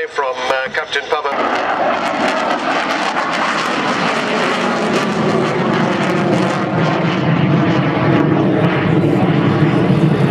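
Military jet fighter's engine noise during an airshow display: a loud, steady rush with a low hum, swelling slightly toward the end.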